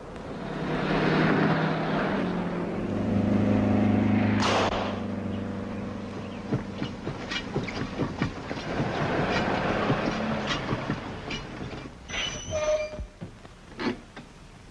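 1940s cars driving on a street: a steady engine drone and tyre noise that swells twice in the first few seconds as a car passes, then runs on evenly with scattered light clicks.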